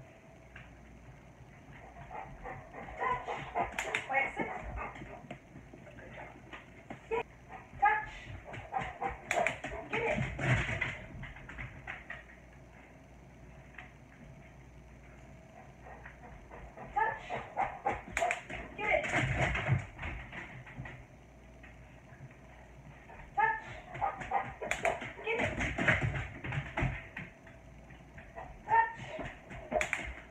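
Dogs whining and yipping in several excited spells, with some clicks and thumps between the calls.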